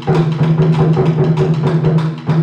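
Japanese taiko drums played as an ensemble: rapid, driving stick strokes on several barrel drums, with the big drums ringing steadily under the beat.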